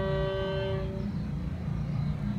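Violin holding a long final note of the piece, which fades out about a second in, over a steady low background rumble.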